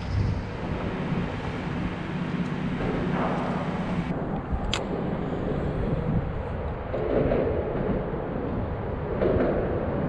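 Steady low rumble of traffic crossing the highway bridge deck overhead, heard from beneath the bridge, with a single sharp click about five seconds in.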